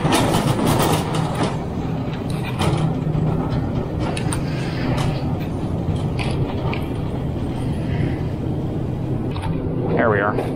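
Metal shopping cart being pushed over a store floor, its wheels giving a steady rolling rumble with scattered clicks and rattles.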